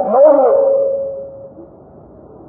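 A man's voice drawing out the end of a phrase on one long held note that fades away about a second and a half in, then a pause with only low room noise.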